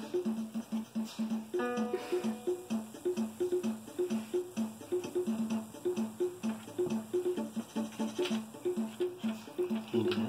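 Pink toy electronic keyboard playing a looping demo tune: a short pattern of two low alternating notes over a steady beat. About a second and a half in, a single note is held for about a second on top of it.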